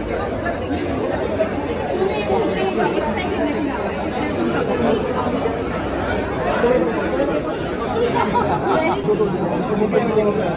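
Several people talking over one another in a steady babble of voices, with no single clear speaker.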